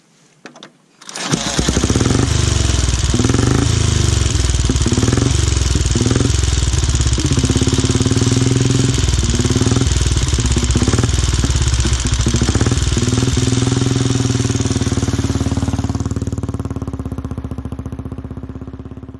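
A 1929 MT 500 OHV motorcycle's JAP single-cylinder overhead-valve engine fires up suddenly about a second in and runs loud, revved up and down in several short blips. It then settles and fades near the end as the sidecar outfit pulls away.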